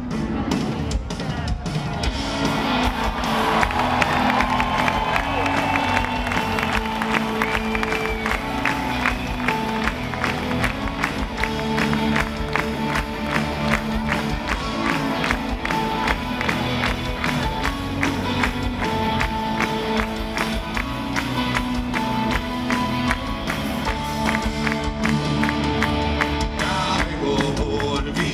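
Live rock band playing with drums, electric guitars and bass, a steady drum beat throughout, and crowd noise underneath.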